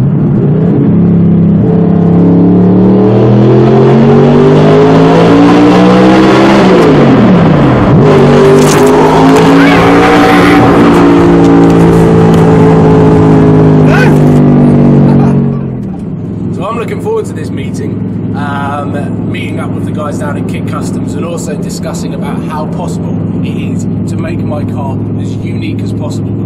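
Audi R8 V8 with an Armytrix exhaust, heard from inside the cabin, accelerating hard: the engine note climbs, drops sharply at a gearshift about seven seconds in, then climbs again and holds. At about sixteen seconds the engine backs off and settles into a quieter, steady cruising drone.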